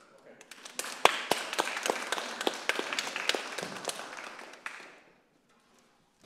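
A small audience applauding, individual claps standing out. The clapping builds within the first second and dies away about five seconds in.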